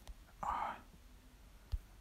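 A short whispered, breathy sound from a person about half a second in, with no clear words. A sharp short click follows near the end.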